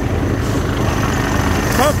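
An engine running steadily with a low rumble; a voice starts near the end.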